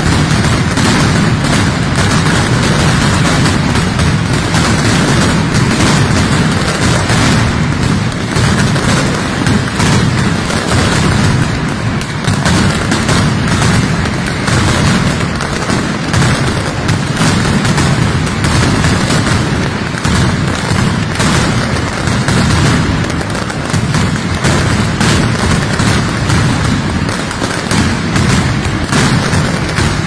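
Mascletà: a dense, unbroken barrage of ground-level firecrackers (masclets) going off in rapid succession, loud throughout, with deep booms under the crackle.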